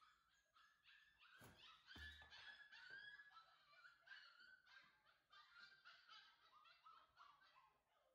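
Faint, repeated high whining and yipping from a puppy. About a second and a half in there is a sharp snap, and about two seconds in another snap with a thud: an umbrella popping open and landing on a wooden floor.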